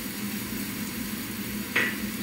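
Sliced white onions sizzling gently in oil in a pot over low heat, a steady hiss. A glass measuring cup clinks once, sharply, near the end.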